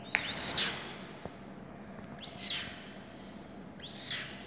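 Young purple swamphen chicks, about 25 days old, calling: three high peeps that rise and fall, roughly two seconds apart.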